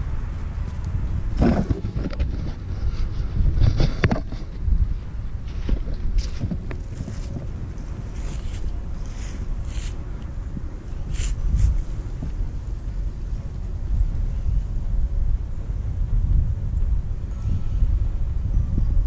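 Wind buffeting the microphone as a steady low rumble. Scattered knocks and rustles through the first half or so come from the camera being handled and moved.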